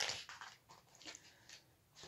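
Faint rustling and light taps of a paper picture book's page being turned and handled, strongest at the start, then a few small rustles.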